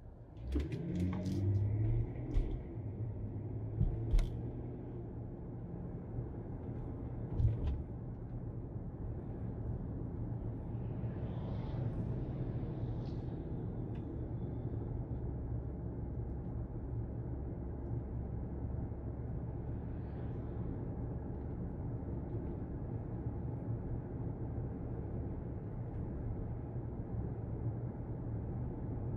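Steady low rumble of a car's engine and tyres heard from inside the cabin while driving. A few sharp knocks and thumps come in the first eight seconds, and a brief swell of hiss comes about halfway through.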